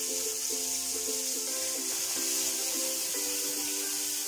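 Background music of held notes that change pitch in steps, over a steady hiss of anchovies frying in oil in a steel pan.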